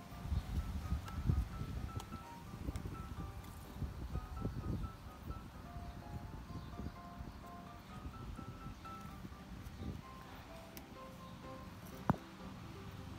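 Soft background music, a simple melody of short high notes, over low rubbing and knocking handling noise from hands working a plant into a terracotta pot. A sharp knock comes at the very end.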